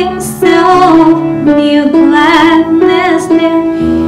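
A woman singing a hymn into a microphone with vibrato, accompanied by piano.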